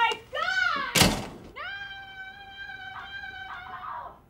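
A thunk about a second in, the loudest sound, between a short vocal sound and a long, high, steady held whine from a person's voice that sinks slightly in pitch.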